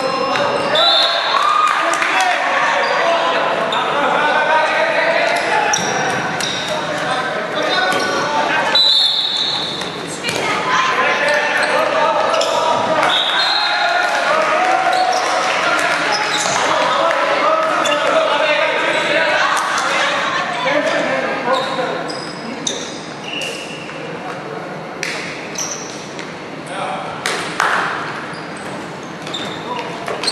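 Dodgeball play in an echoing sports hall: players shouting and calling to each other, with dodgeballs bouncing and smacking on the wooden floor, the impacts standing out more in the last third.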